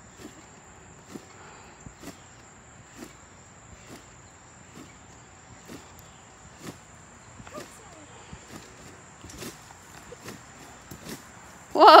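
Faint, regular thumps of bare feet landing on a trampoline mat, about one bounce a second.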